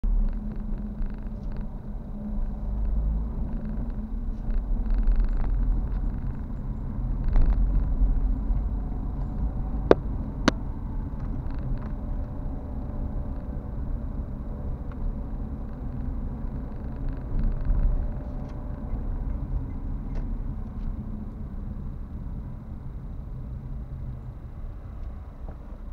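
Car engine and road rumble while driving, a steady low drone that swells and eases. There are two sharp clicks, half a second apart, about ten seconds in.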